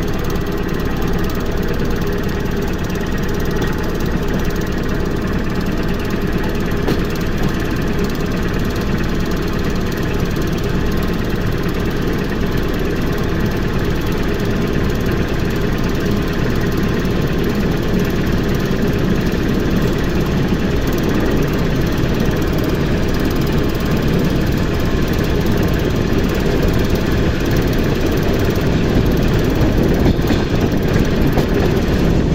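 ER2R electric multiple unit under way, heard from inside the car: a steady low rumble of wheels on rail and running gear that grows slightly louder near the end.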